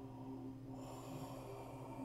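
A man's forceful, hissing breath through the open mouth, starting about a second in, over a low steady background drone.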